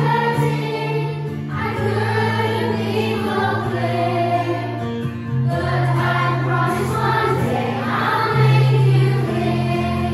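A group of children and teenagers singing together from lyric sheets over an instrumental backing track whose low notes hold steady and change every second or two.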